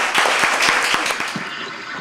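An audience of schoolchildren applauding, the clapping thinning out and fading away over about a second and a half.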